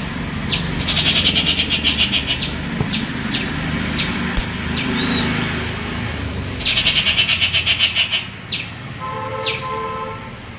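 Outdoor birds calling: sharp high chip notes repeated about every 0.7 s, with two bursts of fast rattling chatter, one about a second in and one near the end, over a steady low rumble. A brief held tone with several pitches, like a horn, sounds just before the end.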